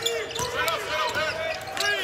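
Game sound from a televised basketball game: a basketball bouncing on the hardwood court, heard as a few sharp knocks, with a commentator's voice underneath.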